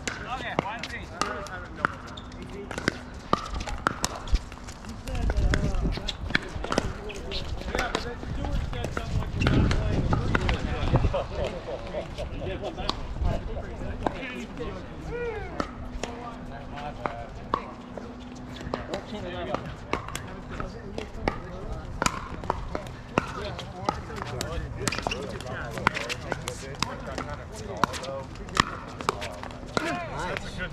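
Pickleball paddles hitting the hard plastic ball: sharp pops, one after another in rallies, from this court and neighbouring courts, over a background of players' voices.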